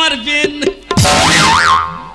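A comic sound effect: a sudden crash with a warbling tone that swoops up and down twice, lasting under a second.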